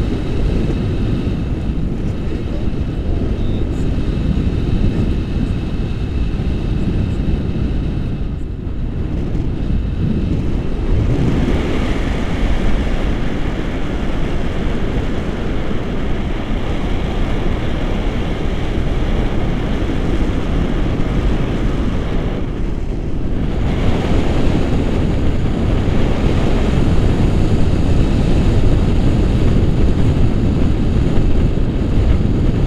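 Wind buffeting the microphone of a selfie-stick camera in paraglider flight: a steady low rumble of airflow that thins in the upper range for a moment twice.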